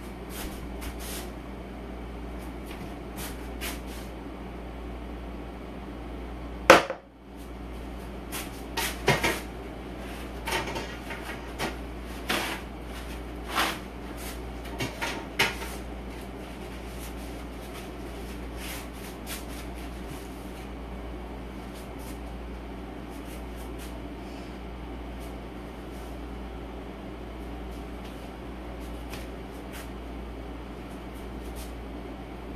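Knocks and clatters of kitchen items and cupboards being handled, the loudest a single sharp bang about seven seconds in, with smaller clicks and knocks following until about halfway through. A steady low hum runs underneath.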